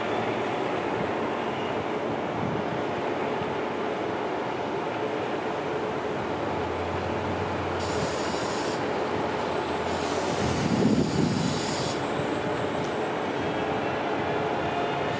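All-electric transit bus driving around a loop and passing close by: a steady electric drive whine over tyre and road noise, loudest about eleven seconds in. Short bursts of high hiss come about eight and ten seconds in.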